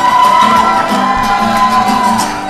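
Acoustic guitar strummed in a steady rhythm, with one long high held note over it that falls away near the end, amid crowd noise.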